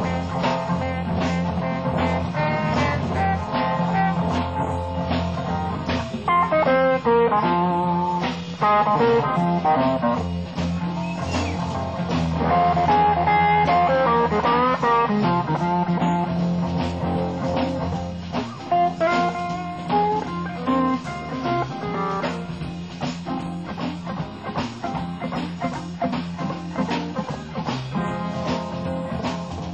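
Live blues-rock band in an instrumental break: guitar lead runs over a steady bass line and beat, with no singing.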